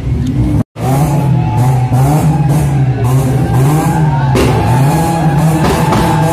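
A car engine revving up and down again and again, its pitch rising and falling smoothly, with music playing along. The sound cuts out completely for a moment just under a second in.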